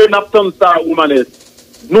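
Speech over a telephone line: a thin, narrow-band voice talking for about a second, then a short pause.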